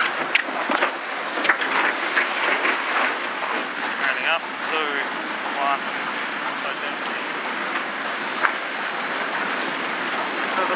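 Steady rush of wind and water on the onboard microphone of an America's Cup racing catamaran sailing at speed, with a few sharp clicks and knocks in the first few seconds and one more near the end.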